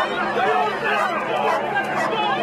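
A crowd of people talking over one another: a steady babble of many voices.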